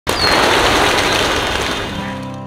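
A flock of feral rock pigeons taking off, a dense rapid clatter of wingbeats, with a short high whistle near the start.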